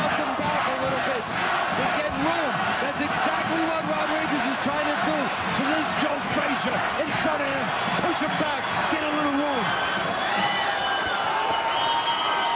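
Boxing arena crowd shouting and yelling, many voices at once, with sharp thuds of gloved punches landing during an exchange at close range. A steady held tone joins near the end.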